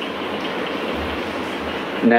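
Steady rushing background noise in a pause between words, with a couple of faint low thumps about halfway through.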